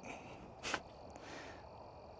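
A short, sharp intake of breath a little under a second in, during a pause in speech, over a faint steady background hiss.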